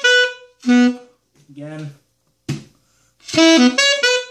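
Alto saxophone playing a short riff of separate notes that ends on a lower note, then, after a brief pause, starting the same riff again.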